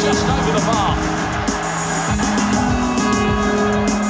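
Live electric guitar played through effects pedals, layered over held droning tones and a loose pattern of low beats.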